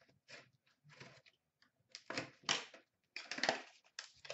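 Plastic wrapper on a hockey card pack being torn and crinkled by hand: irregular crackling bursts, loudest about two and three and a half seconds in.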